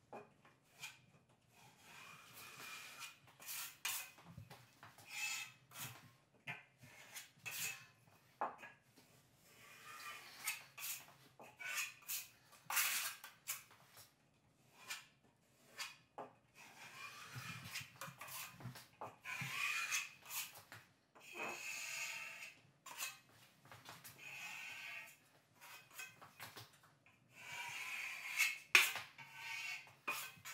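Wide steel drywall trowel scraping joint compound as it rides along two steel corner beads, in a run of irregular scraping strokes, some with a thin ringing tone.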